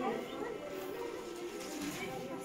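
Indistinct voices of several people talking, with music underneath.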